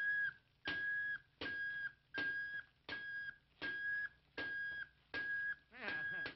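Cartoon steam-kettle whistle tooting one high note over and over, about eight short even toots with gaps between, with a brief wavering whistle just before the last toot.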